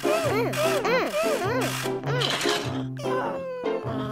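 Cartoon babies crying and whimpering, a run of short rising-and-falling wails and then one long wavering wail about three seconds in, over children's backing music with a steady bass line.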